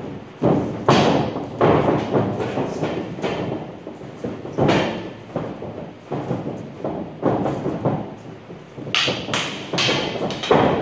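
Irregular thuds and knocks of stick sparring in a boxing ring: footwork stamping on the ring floor and sticks striking padding and each other, a dozen or so hits with a short echo. About nine seconds in comes a quick run of three sharper cracks as the fighters close in.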